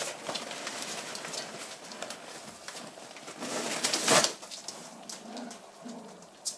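A five-week-old Shetland sheepdog puppy making soft vocal sounds, with one louder sudden noise about four seconds in.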